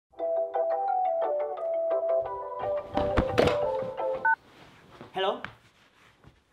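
Mobile phone ringtone playing a quick melody of short notes, with rustling and a thump as the phone is grabbed; the ringtone cuts off after about four seconds as the call is answered.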